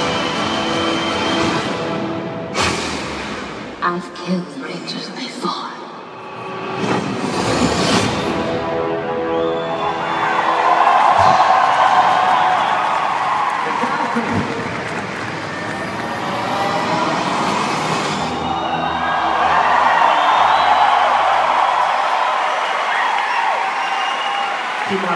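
Movie-trailer soundtrack over a hall's loudspeakers: music, then a run of sharp hits and sweeps in the first several seconds. After that, a large audience cheers and screams in two long swells.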